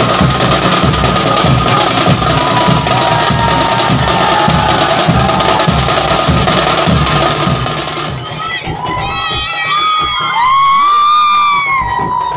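Large barrel drums beating with a cheering, shouting crowd. About eight seconds in the drumming drops away, leaving high-pitched shouts that rise and fall and one long, loud cry near the end.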